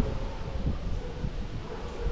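Wind buffeting the microphone in irregular low gusts, with a faint steady hum underneath.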